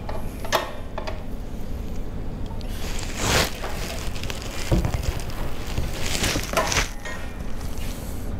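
Handling noise as the rear pad of a motorcycle split seat is pressed down and fitted onto the frame: a few scattered knocks and rustles, the strongest about three seconds in and a low thump near the middle, over steady low background noise.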